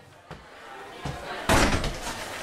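A door slamming shut about one and a half seconds in, the loudest sound, after a couple of lighter knocks.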